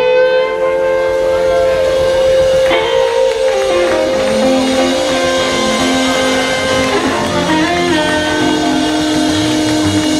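Live blues band playing: a harmonica holds long notes that step and bend in pitch over electric bass and electric guitar.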